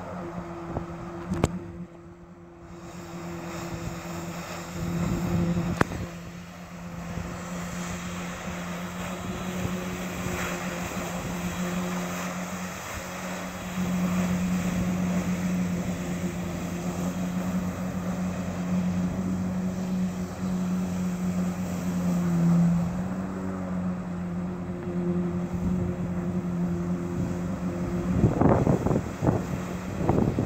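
Jet ski engine running under load, pumping water up the hose to a FlyHero board's jets, with the hiss of the jets over it. It drops off about two seconds in, picks up again and runs louder from about halfway; near the end a few rough gusts rise over it.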